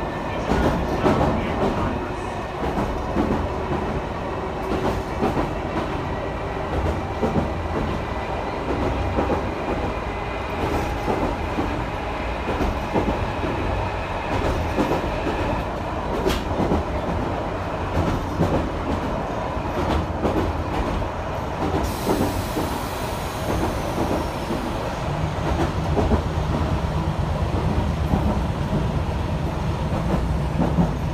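Chikuho Electric Railway 3000 series electric car running at speed, heard from inside with the windows open: the growl of its nose-suspended traction motors over wheel-and-rail running noise and scattered clicks from the track. A low steady hum grows stronger near the end.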